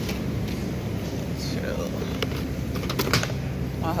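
Plastic drink bottles being handled and set into a wire shopping cart, giving a few short clicks and knocks, over a steady low hum.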